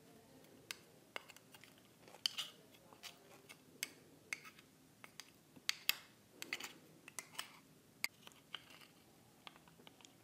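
Metal spoon clicking and scraping against an oyster shell as the oyster meat is scooped out: a run of irregular, sharp clicks and ticks, a few of them louder.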